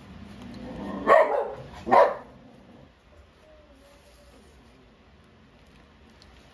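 A dog barking twice, about a second apart, sharp and loud.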